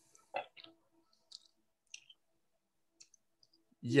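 Faint, scattered short clicks and small noises against near silence, then a man says "yeah" right at the end.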